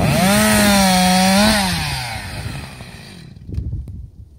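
Husqvarna 346 XP two-stroke chainsaw running at full throttle in a steady high whine for about a second and a half, then the revs slide down and the engine note fades out about three seconds in.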